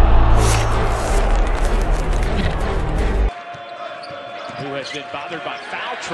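Loud intro music with a deep bass and a whoosh, cutting off abruptly about three seconds in. Then arena sound: a basketball bouncing on a hardwood court over crowd murmur.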